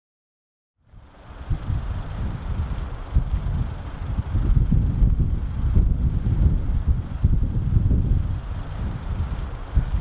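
Wind buffeting the microphone, a gusty low noise that rises and falls, fading in after about a second of silence.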